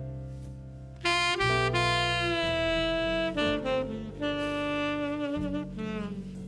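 Tenor saxophone playing a jazz melody in long held notes, coming in louder about a second in, over a double bass line.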